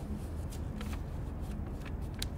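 Paper flyers handled and thumbed through by hand: a few short, crisp paper ticks and rustles over a steady low background rumble.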